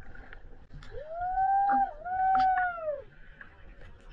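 Two long voice-like calls, one right after the other, each rising and then falling in pitch.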